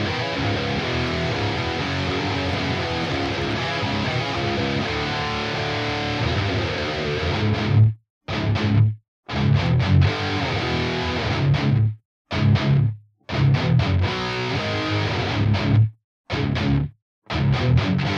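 Distorted electric guitar played back through blended cabinet impulse responses summed to mono: a held, ringing chord for about eight seconds, then a stop-start riff in short phrases with sudden breaks between them. The IRs' time alignment is being changed as it plays, which shifts the phase between the cabinets and so the tone.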